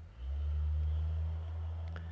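A steady low hum that comes in suddenly just after the start and then holds level.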